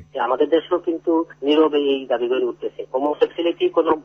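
Speech only: a voice talking in Bengali with hardly a pause, over a faint steady low hum.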